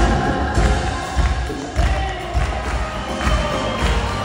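Live band music with a steady low bass-drum beat under sustained instruments and a singing voice, played through a concert hall's sound system.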